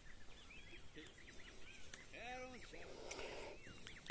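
Faint bird calls in the background: many short chirps that rise and fall in pitch, with one louder, lower sound about two seconds in.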